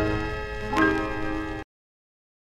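Closing notes of a 1963 orkes lama band recording: a held chord ringing and fading, with one more struck note a little under a second in. The recording then cuts off suddenly about a second and a half in.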